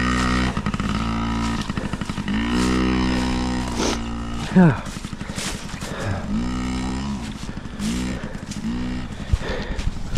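Dirt bike engine running, steady at first, then its pitch rising and falling over and over with the throttle, about once a second.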